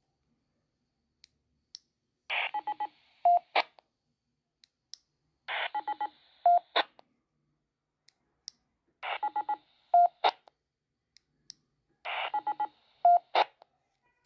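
Baofeng dual-band handheld transceiver sounding a repeated electronic signalling sequence four times, about every three and a half seconds. Each sequence is a quick run of about five short beeps over a hiss, then one louder steady beep and a click.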